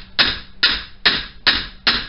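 Hammer blows on the front suspension of a Saturn, metal on metal, as the broken front strut is knocked loose. Five evenly spaced strikes, about two and a half a second, each with a short ring.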